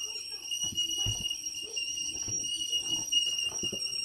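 Tea kettle whistling at the boil in one steady high tone, with faint knocks and rustles of cardboard oatmeal boxes being handled and set down on a counter.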